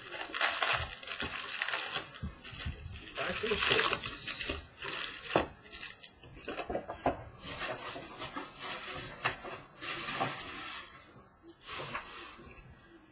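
Cardboard hobby box and foil-wrapped trading-card packs rustling and crinkling as the box is opened and its packs are pulled out and stacked, in about four bursts with light clicks between.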